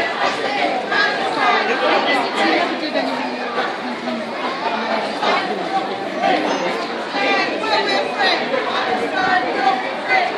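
Crowd chatter: many marchers talking at once as they walk past, overlapping voices with no single speaker standing out.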